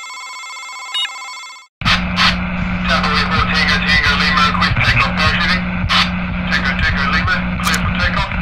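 Electronic title sound effects: a steady multi-tone electronic beep with a click about a second in, cut off suddenly, then from about two seconds in a loud crackling radio-transmission noise over a steady low hum.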